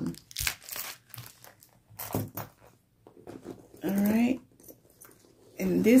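A few short crinkling rustles of wrapped candies being handled in a small zip-around pouch.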